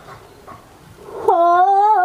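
A man's voice singing one long, loud, held note that starts about a second in and bends downward as it ends.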